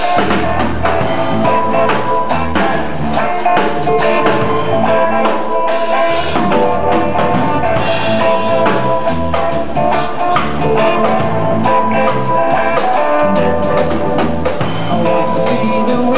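Live roots reggae band playing an instrumental passage: drum kit, bass guitar, electric guitar and keyboard, with a pulsing bass line and a steady drum beat.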